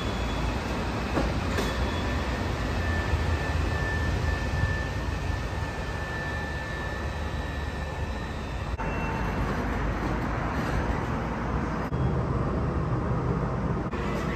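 Skyline metro train standing at an elevated station platform, giving a steady low rumble with a thin high whine that stops about two-thirds of the way through.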